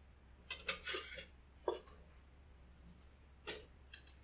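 A few faint, short knocks and rattles as a carrot and a jalapeño are handled in and around the slots of a two-slice toaster. There is a small cluster about a second in, and a couple more near the end.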